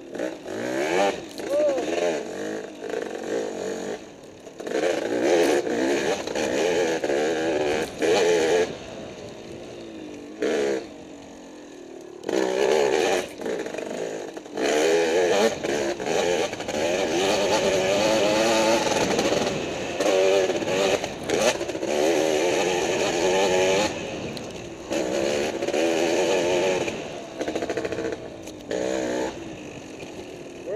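Dirt bike engine revving in repeated bursts as the throttle opens and closes, the pitch rising and falling, with short quieter dips between bursts.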